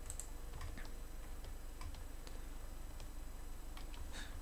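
Faint, scattered clicks of a computer mouse and keyboard, a few at irregular intervals, over a low steady hum.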